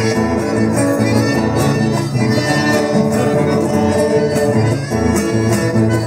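An accordion and two acoustic guitars playing a tune together live.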